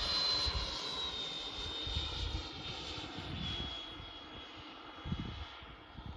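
Electric ducted-fan motor of a radio-controlled HSD L-39 model jet flying overhead: a steady high whine that slides down in pitch twice and grows fainter as the model draws away.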